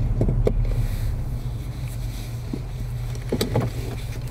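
Car cabin rumble from the engine and road, easing down after about a second as the car comes to a stop, with a few short clicks and knocks inside the car.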